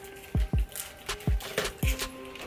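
Background music with a steady beat: deep kick-drum hits about twice a second under held synth notes and sharp ticks.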